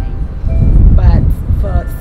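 A woman speaking in short fragments, mid-sentence, over a loud, continuous low rumble.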